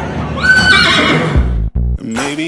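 A horse whinnies once about half a second in, over loud background music with a beat.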